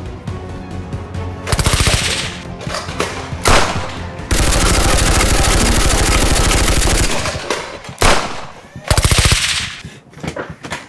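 Bursts of rapid automatic gunfire, the longest a steady run of about three seconds near the middle, over background music.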